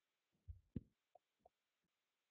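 Near silence, broken by about four faint, short, low thumps spaced through the two seconds.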